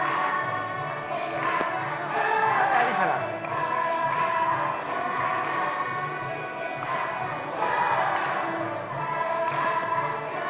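Children's choir singing an upbeat song with music accompaniment, with rhythmic hand claps.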